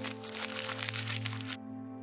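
A sheet of paper being crumpled up in the hands, a dense crackling that stops abruptly about one and a half seconds in, over background music with sustained tones.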